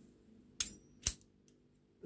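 Two light metallic clinks, about half a second apart, from a brass padlock being turned over in the hands, its open shackle and the ring hanging on it knocking together.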